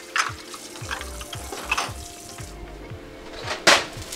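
Garlic, ginger and Thai chilies frying in hot oil in a wok, a steady sizzle. A few short knocks and scrapes of the wok come through it, with a loud clatter near the end as the wok is moved.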